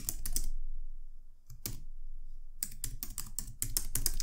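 Computer keyboard typing: a quick run of keystrokes, a pause with a single stroke in the middle, then a faster, longer run near the end.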